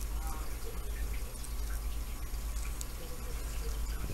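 Low steady background hum with a faint hiss and a few faint small ticks.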